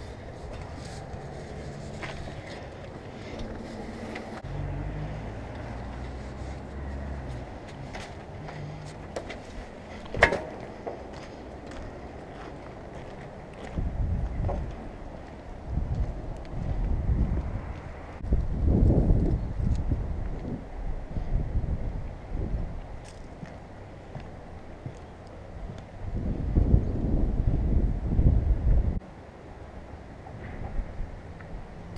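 Wind buffeting the camera's microphone in irregular low rumbling gusts, strongest in the second half, with a single sharp knock about ten seconds in.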